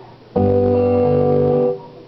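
Acoustic guitar strummed once: a single chord that starts suddenly, rings for about a second and a half, then stops short.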